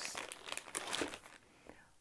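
Clear plastic zip-top bag crinkling as it is handled and set down on a table; the crinkling stops about a second and a half in.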